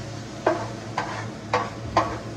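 A metal spatula strikes and scrapes a large flat iron griddle four times, about twice a second, as meat and vegetables are stirred on it. Between the strokes the food sizzles steadily, over a low steady hum.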